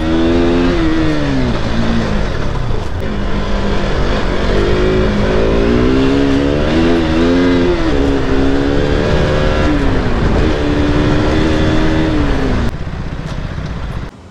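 Single-cylinder engine of a KTM sport motorcycle heard from the rider's seat, revving up and down through the gears while riding, over a steady low rumble of road and wind. The pitch falls about a second in, climbs and dips several times through the middle, and eases off near the end.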